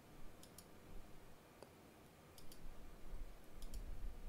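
Faint computer mouse clicks, about seven short sharp clicks, mostly in quick pairs like double-clicks.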